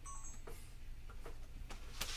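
A brief electronic beep right at the start, then faint scattered ticks over a steady low hum.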